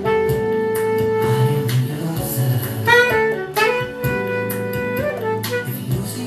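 Saxophone playing a melody over a backing tape: a long held note, a quick run of notes about three seconds in, then another held note that stops about five seconds in, with drums and band accompaniment underneath.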